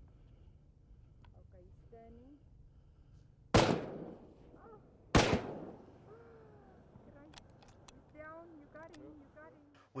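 Two rifle shots about a second and a half apart, each a sharp crack followed by a short rolling echo.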